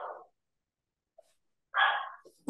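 Breathy exhalations: one sigh-like breath fading out at the start, then silence, then another short breathy exhale near the end.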